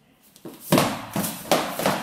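Blue foam practice swords whacking against each other and the sparrers in a quick flurry: about four sharp hits in just over a second, starting about two-thirds of a second in.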